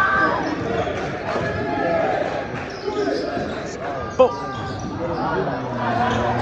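Basketball bouncing on a gym floor during play, with voices of players and spectators in a large echoing hall. One sharp, loud impact comes about four seconds in.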